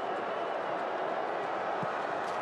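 Steady stadium crowd noise, an even wash of many voices with no single sound standing out.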